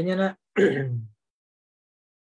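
A man speaking two short phrases, the second falling in pitch, that stop about a second in and give way to dead silence.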